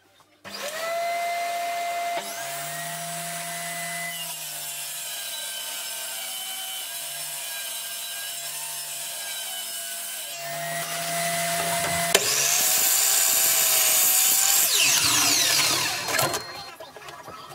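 Table saw's circular blade starts up about half a second in and runs, then cuts a laminate flooring board fed along the fence, the motor note dropping under the load and recovering. From about 12 seconds there is louder sawing, and near the end a saw motor winds down with a falling pitch.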